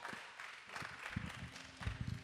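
Faint scattered clicks and taps, with a few soft low thumps, in a quiet room.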